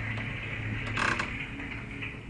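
Budgerigars chattering, with one short harsh call about a second in, over a steady low hum.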